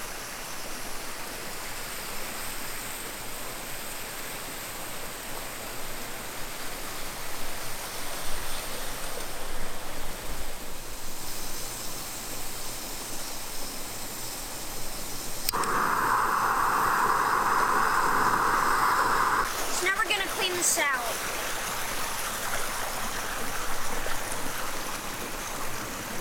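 Steady rushing water of a small rocky creek. About fifteen seconds in, a louder steady hiss cuts in for about four seconds and stops suddenly, followed by a few short clicks.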